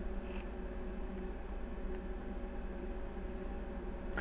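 Room tone: a steady low electrical hum with faint steady tones above it.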